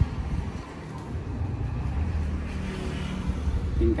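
A low, steady rumble with no clear pitch.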